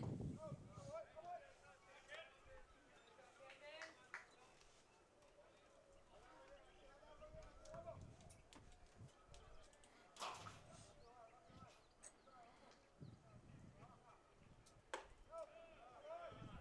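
Near silence: faint distant voices calling, with a few soft knocks, the clearest about ten seconds in.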